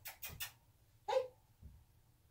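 A few quick clicks at the start, then a single short yip from a husky puppy about a second in.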